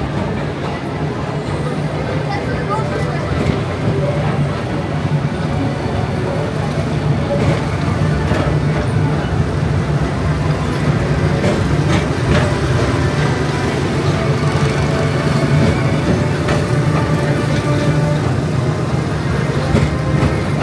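Tomorrowland Transit Authority PeopleMover car running along its elevated track, a steady low rumble. Voices and faint music mix in.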